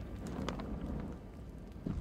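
Low, steady wind rumble on an outdoor microphone, with no distinct sounds in it.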